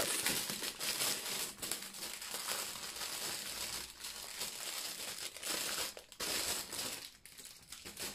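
Clear plastic wrap crinkling as a wrapped bundle of bagged diamond-painting drills is handled and unwrapped, easing off near the end.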